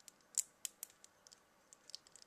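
A few faint, irregular plastic clicks from a Revoltech action figure's shoulder joint being worked up and down by hand. The clearest click comes about half a second in.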